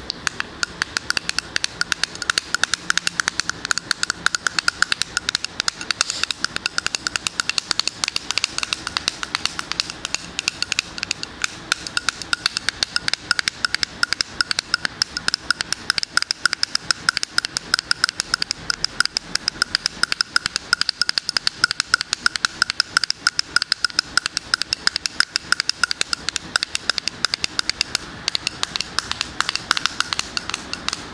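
Fingers tapping fast and continuously on a moisturizer jar with a silver metal lid, each tap ringing briefly with a light, bright tone.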